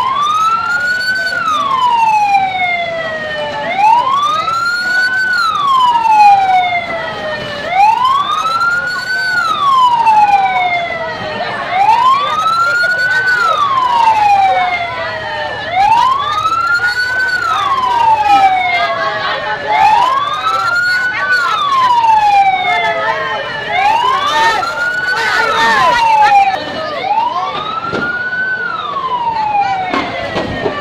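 Emergency vehicle siren wailing: each cycle rises quickly and then falls slowly, repeating about every four seconds.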